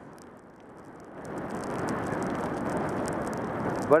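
Skis sliding over snow, a hissing scrape of the bases on the snow that grows louder from about a second in and then holds steady.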